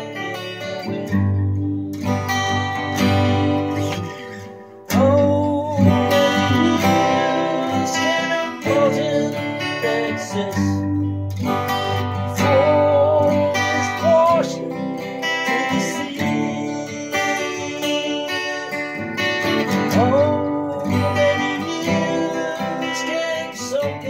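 Acoustic guitar strummed and picked in chords with a full bass, played through a Fotobeer passive pickup. The playing falls away about four seconds in and comes back loudly a second later.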